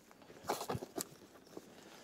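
A few faint knocks and rustles in the first second as a folded carbon-fibre travel tripod is handled and lifted out of its padded carrying bag, then only faint handling noise.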